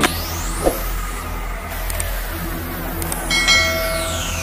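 Synthesized intro sound effects: a rising sweep over a low steady drone, then a bright bell-like chime about three seconds in, as a long falling sweep begins.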